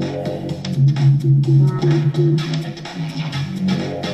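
Background music led by guitar over a bass line, with a steady beat.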